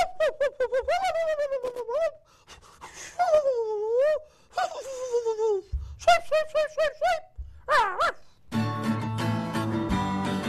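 A person laughing in a high voice, in quick bursts and long wavering whoops; about eight and a half seconds in, an acoustic guitar chord is strummed and rings on.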